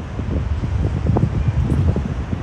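Wind buffeting the microphone of a camera mounted on an open slingshot-ride capsule high in the air: a loud, uneven low rumble.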